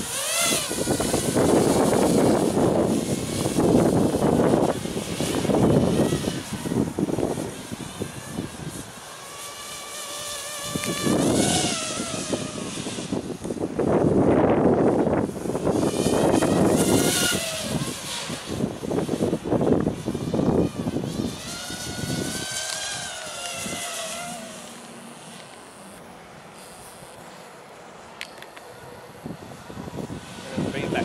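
Walkera Furious 215 racing quadcopter's brushless motors and three-blade propellers whining as it lifts off and flies, the pitch rising and falling with the throttle, over stretches of loud rushing noise. The sound grows fainter for the last few seconds as the quad climbs away.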